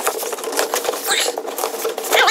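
Packing tape tearing and cardboard rustling as a cut shipping box is pulled open: a rapid crackle over a steady buzz.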